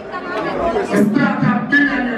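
A man's voice amplified through a handheld microphone and PA, with crowd chatter behind it.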